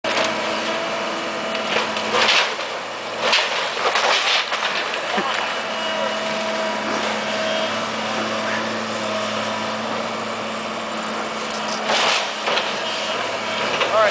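Tracked excavator running steadily while it demolishes a wood-frame house, with louder bursts of crashing debris a few times: about two seconds in, between three and four and a half seconds, and near twelve seconds.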